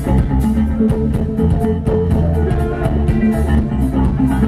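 A live rock band playing loud and steady: electric guitar and bass over a drum kit with regular cymbal strikes.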